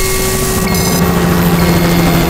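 Loud, steady rushing noise of a glitch-style logo-sting sound effect. A low hum comes in about half a second in, and a brief stuttering electronic chirp sounds just under a second in.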